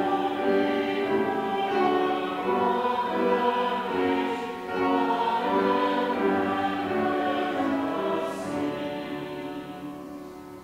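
Choir and congregation singing a slow hymn in long held notes, with a brief breath between phrases about halfway through.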